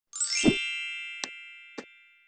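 Intro sound effect: a bright chime of many tones struck with a low thump, ringing and slowly fading, with two short clicks, one a little past a second in and one near the end.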